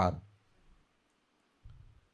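A man's lecturing voice trails off at the start, then a pause of near silence. Near the end there is a brief low rumble on the microphone.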